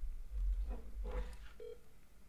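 Smartphone on speaker placing a call: short electronic call tones, two brief beeps about half a second apart, over low bumps of the phone being handled near the microphone.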